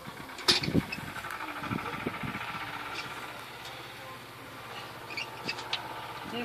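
An engine idling steadily, with one sharp knock about half a second in and a few lighter clicks near the end.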